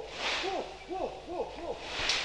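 Short hooting vocal calls from a Kaiapó ritual chant-and-dance field recording. Four calls come about two a second, each rising and then falling in pitch. Brief hissing bursts sound near the start and again at the end.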